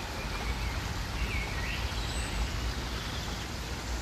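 Steady outdoor ambience: a low rumble with an even hiss, and a few faint bird chirps about a second in.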